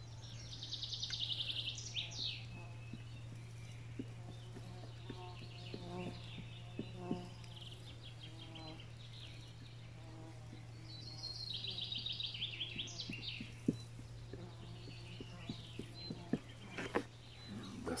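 A bird singing: a fast trilled phrase with falling notes about a second in, and the same phrase again around eleven seconds in, over a steady low hum.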